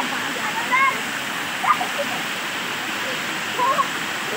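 Small waterfall pouring over rock close by, a steady rushing of water, with short voice calls over it now and then.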